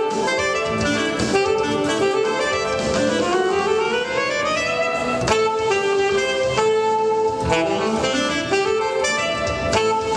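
Alto saxophone playing a jazz tune. About three seconds in, a long upward glide in pitch rises over some two seconds before the melody carries on.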